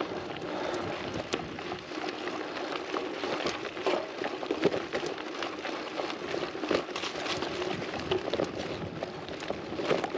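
Gravel bike tyres rolling over a stony dirt track: a steady crunching crackle dotted with many small knocks and rattles from the bike. The tyres are pumped hard to two bar, so the bumps come through with almost no cushioning.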